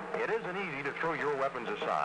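Speech only: a man's voice, a radio announcer reading a spoken announcement on an old broadcast recording.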